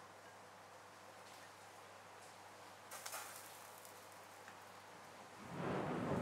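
Mostly faint background hiss, with soft handling noises from blanched bok choy being arranged around a plate: a brief crackle about three seconds in and a louder rustle in the last half-second.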